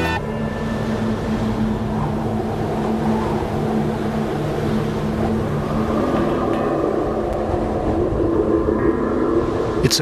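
An engine running at a steady speed: a constant low drone with an even hiss above it, unchanging throughout.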